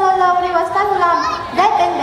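A schoolgirl's voice speaking through a microphone, with long, drawn-out syllables.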